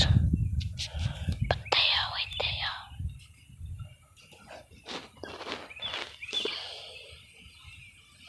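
A person whispering softly, in short phrases with pauses, and a few faint clicks between them.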